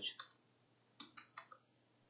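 Faint keystrokes on a computer keyboard as a short terminal command is typed and entered: one click just after the start, then three quick clicks about a second in.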